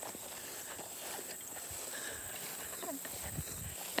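Faint outdoor ambience of walking through grass: soft footsteps and rustling, under a thin, steady high-pitched insect drone.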